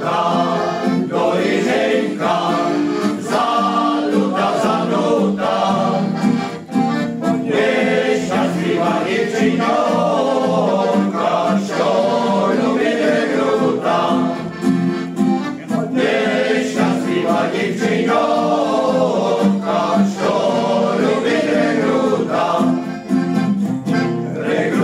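Male choir singing in unison with accordion accompaniment, in phrases with short breaths between them.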